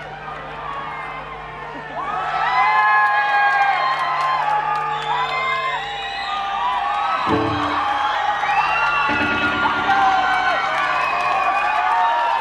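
Concert crowd cheering, whooping and whistling, heard from within the audience. A held low note sounds from the stage under the cheers for the first half, with a few short low notes later.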